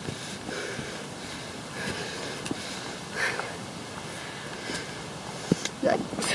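A person breathing hard while climbing steps, in a few breathy swells, with jacket fabric rubbing on the microphone and a couple of short knocks.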